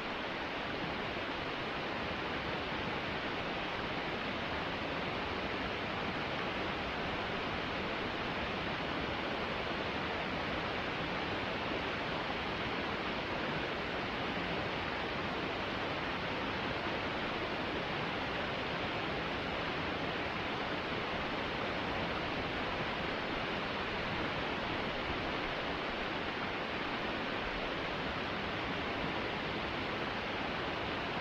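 Small glacial meltwater stream and waterfall running over rocks: a steady, even rush of water.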